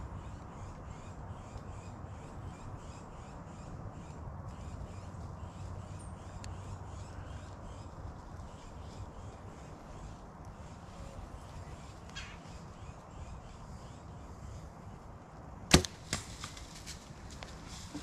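A compound bow being shot: one sharp crack of the string release about three-quarters of the way in, a smaller crack a moment later, then about a second of crackling in the brush. Before the shot there is only a faint woodland background with a regular high chirping.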